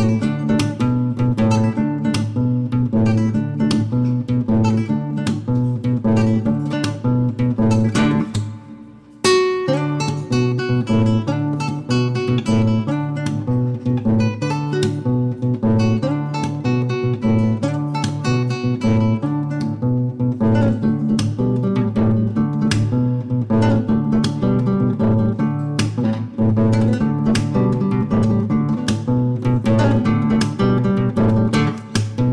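Nylon-string classical guitar played fingerstyle in an African guitar style, plucked melody notes over a steady rhythmic bass pattern. The playing thins out and fades briefly about eight seconds in, then comes back in strongly.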